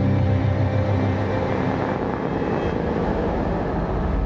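Dark ambient horror soundtrack bed. Sustained low tones fade out over the first second or two into a steady, rumbling, droning wash.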